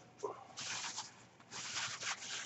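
Thin plastic grocery bag rustling and crinkling in irregular bursts as a freshly dyed shirt is wrapped up in it.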